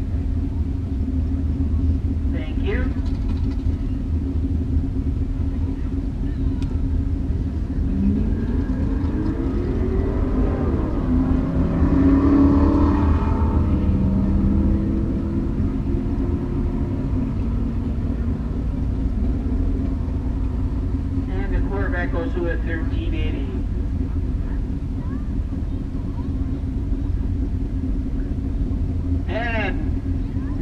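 Steady low rumble of car engines idling in drag-racing pits, with one engine rising in pitch about eight seconds in and loudest around twelve to fourteen seconds as a car drives through.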